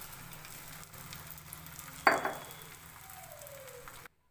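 Egg omelette frying in ghee in a flat pan: a steady sizzle, with one sharp knock that rings briefly about two seconds in.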